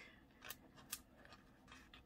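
Two faint, sharp clicks as a paper sticker is lifted off its backing sheet with a fingernail, about half a second and a second in; otherwise near silence.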